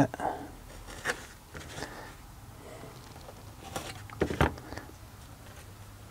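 A knife trimming a small piece of leather around a punched hole: a few faint, sharp clicks of cutting and handling, with a louder pair of knocks about four seconds in.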